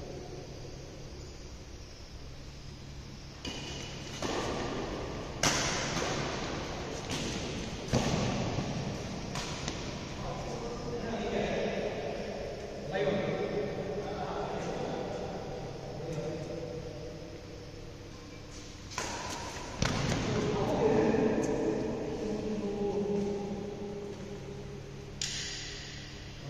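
Badminton rackets striking a shuttlecock in a doubles rally: about ten sharp hits at irregular spacing, each ringing on in a large echoing hall, with players' voices calling out between shots.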